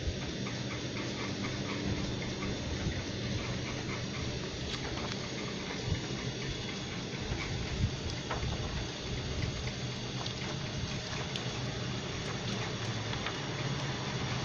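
Steady whir of an electric fan running, with a low motor hum, and a few soft clicks and rustles of thick omnibus pages being turned.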